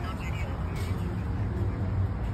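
A steady low rumble of outdoor background noise, with faint voices in the background.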